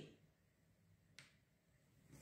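Near silence: room tone, with one faint short click a little past a second in.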